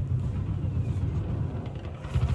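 Low, steady rumbling room noise of a live concert recording before the performance begins, with a fluttering low end and a light hiss above it.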